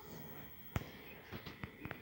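A few faint, sharp clicks: one a little louder just under a second in, then a quick run of softer ones near the end.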